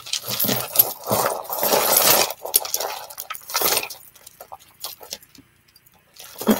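Costume jewellery (bead strands, pearls and metal chains) clinking and rattling as hands sift through a heap of it in a woven basket. The jangling is busiest for the first two seconds, thins to scattered clicks, and fades to faint ticks after about four seconds.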